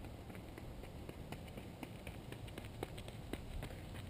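Light footfalls of a runner doing a skipping drill on a dirt path: quick, even steps about three or four a second.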